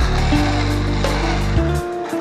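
Background music with sustained held tones over a steady bass.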